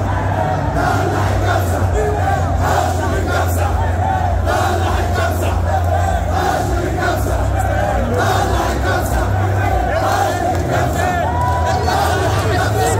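Large crowd of football fans shouting and chanting together, loud and steady.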